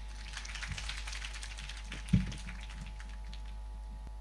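Audience applause: a patter of many hand claps that fades out by about three seconds. One louder thump sounds about two seconds in.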